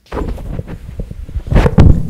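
Handheld microphone handling noise as it is picked up and held: loud low rumbling and rubbing with a few knocks, heaviest near the end.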